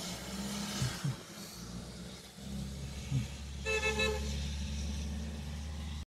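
Car passing on a wet road with a steady low engine rumble, and a car horn giving a few quick short toots just past halfway.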